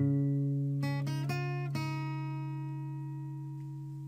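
Guitar music: a low chord struck suddenly, a few quick notes about a second in, then a new chord left ringing and slowly fading.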